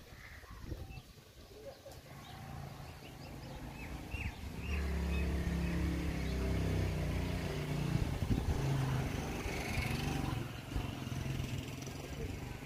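A motor vehicle's engine running, getting louder about four seconds in and staying loud, with a few short bird chirps before it.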